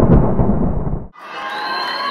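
A deep, rumbling thunder-like sound effect under an animated logo intro fades out about a second in. It is followed by quieter held high tones over the background noise of a hall.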